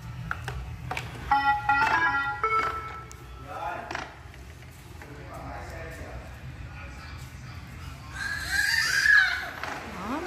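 Shark robot vacuum's short start-up chime of a few stepped electronic tones, about a second after its Clean button is pressed. Near the end a baby lets out a loud high-pitched vocal sound.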